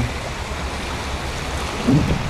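Steady rush of shallow water from a small mountain stream running over sand and pebbles where it meets the sea, with small waves at the shore.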